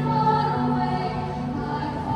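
Girls' choir singing long, held notes over a steady low accompanying note from a keyboard, the chord changing near the end.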